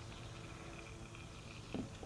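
Faint, near-steady background, then one short soft glug near the end as oil glugs out of the upturned plastic jug into the coffee-filter funnel as the filter drains.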